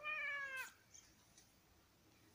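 A tabby cat meowing once: a single short meow of under a second that falls slightly in pitch.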